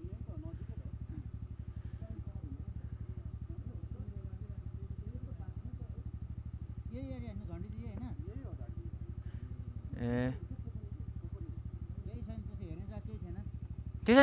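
An Aprilia two-wheeler's engine running steadily under way, with a low, even pulsing. A brief, louder pitched sound comes about ten seconds in.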